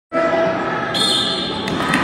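Crowd of many voices talking and calling out in an indoor sports hall, echoing in the large room.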